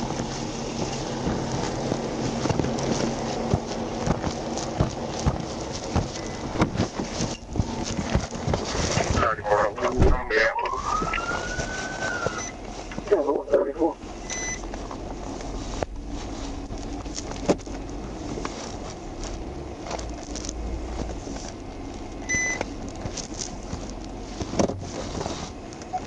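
Steady wind noise and rubbing crackle on a trooper's body microphone. About ten seconds in, a police siren gives a brief rising wail and then a warble. Two short high beeps come later.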